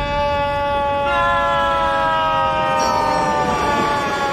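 A man's long, drawn-out yell held on one note, joined about a second in by a second held voice, both sliding slowly down in pitch near the end: a cry of alarm at a spilling drink.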